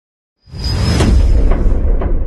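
Logo intro sound effect: a whoosh over a deep rumble that comes in suddenly about half a second in, after silence.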